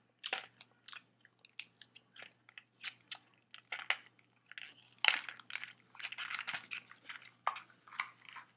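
A person chewing and biting food close to the microphone: irregular, sharp crunching and smacking mouth sounds, several a second, loudest about five seconds in.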